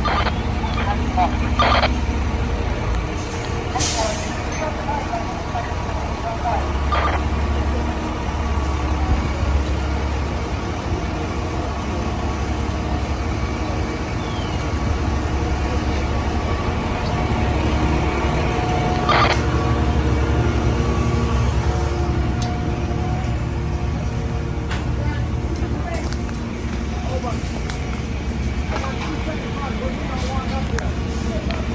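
Fire apparatus diesel engines running steadily at the fireground, a low constant rumble, with a few sharp knocks and clicks from equipment.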